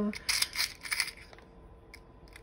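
Small metal charms clinking against each other and the plastic compartment box as fingers pick through them: a quick run of light clicks in the first second, then a few faint ticks.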